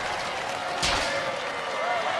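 Background noise in a robot-combat arena, with faint steady tones under it and one short, sharp noisy burst about a second in.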